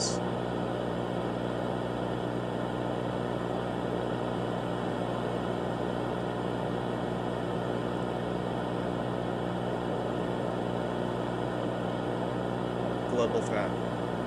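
Steady analog-horror static hiss over a low droning hum, VHS-style tape noise that stays level throughout. A voice comes in briefly near the end.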